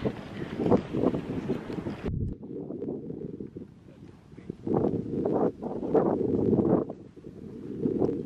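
Wind buffeting the camera microphone, a rough rumbling rush that rises and falls in gusts. It turns duller abruptly about two seconds in and swells again in the second half.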